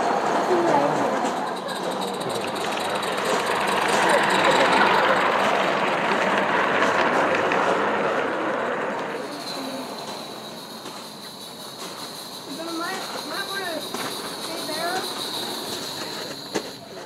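G-scale model train running along garden railroad track close by, a steady rolling rush of wheels on rails that fades away after about nine seconds.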